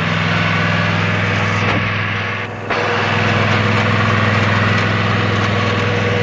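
Cub Cadet riding lawn mower's Kohler engine running steadily as the mower drives along, with a brief dip in level about two and a half seconds in.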